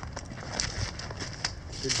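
Footsteps on a dry, leaf-strewn dirt track: a run of irregular scuffs and crackles.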